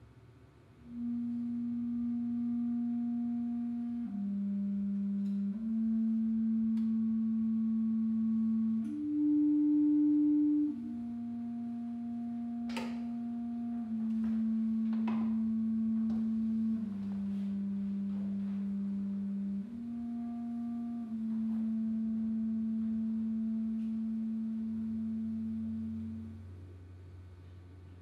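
Clarinet playing a slow line of long, soft-edged low notes, each held steady without vibrato for a few seconds and moving by small steps in pitch. A single sharp click about halfway through.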